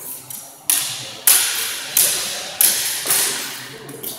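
Steel cut-and-thrust sword blades clashing in a fencing exchange: about six sharp strikes in quick succession, each ringing out briefly in a large hall.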